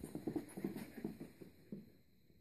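A quick flurry of soft thumps and scuffles as a dog and a tabby cat wrestle in play on carpet, with one more thump near the end.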